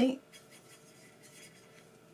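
Faint scrubbing of a paintbrush mixing watercolour in a tin palette's mixing well, heard just after the end of a spoken word.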